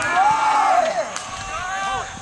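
Indistinct shouting from soccer players and sideline spectators, several voices overlapping, with one long drawn-out call in the first second.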